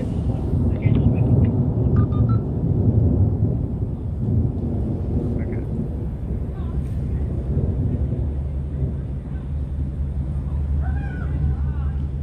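Low rumble of thunder, loudest over the first four seconds, then settling into a steadier low drone.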